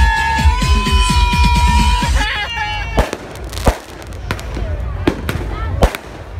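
Loud party music for about the first two seconds, then fireworks going off: six or seven sharp bangs over the last three seconds, with people's voices between them.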